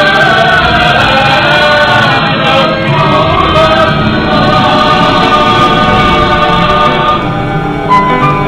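A choir singing long, held notes in several voices at once, over a musical backing.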